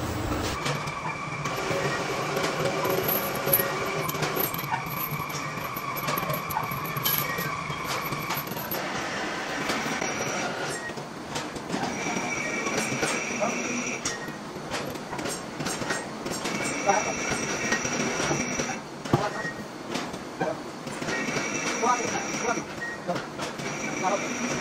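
Overhead hoist lifting and shifting a heavy steel shaft slung in a chain: a high metallic squeal held steadily for several seconds, then returning in shorter bursts, over clinks and knocks of chain and metal.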